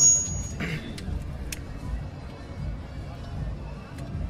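Low background murmur of a room full of people with faint music under it, a short burst of voice just under a second in and a single sharp click about a second and a half in.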